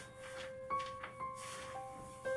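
Slow background piano music: one note is held low while a few new notes come in above it.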